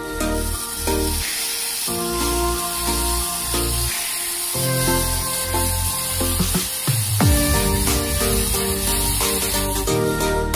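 Hissing spray of ground fountain fireworks throwing up sparks, a steady high hiss, under a loud electronic music track with a steady beat.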